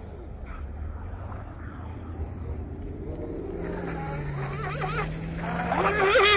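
Pro Boat Miss Geico 17 RC catamaran with a Traxxas 380 brushless motor running at speed on the water, heard faintly from the shore over a steady low rumble.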